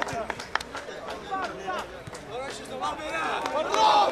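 Several voices shouting and calling over one another, with a few sharp knocks among them; one voice gets louder near the end.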